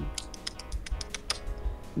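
Typing on a computer keyboard: a quick run of about a dozen key clicks, over faint background music.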